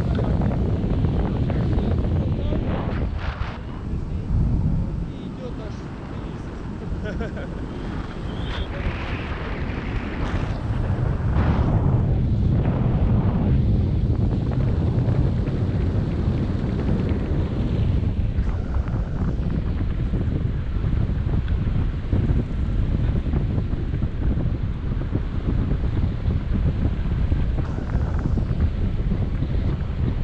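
Wind buffeting the camera microphone as a tandem paraglider flies: a steady low rushing, easing off for a few seconds about four seconds in, then back up.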